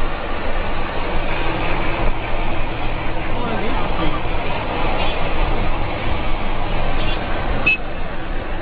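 Steady road and traffic noise heard from a moving car on a highway, with people's voices over it and a short click near the end.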